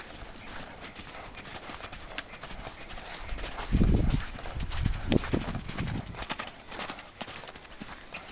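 Hoofbeats of a horse cantering on soft dirt and sand arena footing, with a couple of louder low thuds about four and five seconds in.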